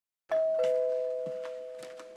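Two-tone ding-dong doorbell chime: a higher note, then a lower one, both ringing on and slowly fading. It announces a visitor at the front door.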